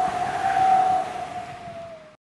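Animated-logo sound effect: a held whistle-like tone over a noisy whoosh, fading out and dipping slightly in pitch near the end.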